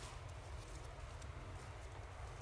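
Faint outdoor field ambience: a low rumble with scattered light clicks and rustles.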